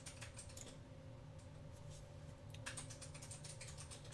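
Faint typing on a computer keyboard: scattered key clicks, a pause of about a second in the middle, then more clicks, over a faint steady hum.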